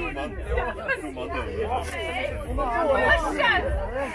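Several people talking and chattering at once, with a steady low rumble underneath.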